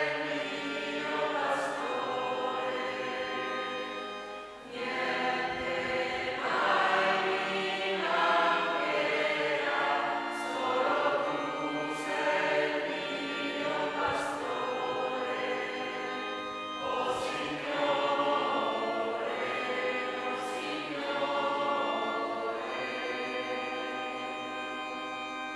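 Church choir singing a hymn with organ accompaniment, in sung phrases with a brief break about five seconds in.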